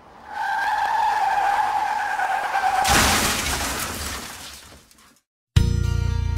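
Car skid-and-crash sound effect: a steady tyre screech for about two and a half seconds, cut off by a loud crash that dies away over about two seconds. Guitar music starts near the end.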